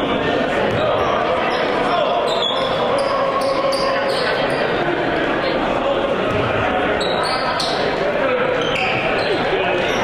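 Live basketball game sound in a large gymnasium: voices and chatter echoing through the hall, with a basketball bouncing on the hardwood court.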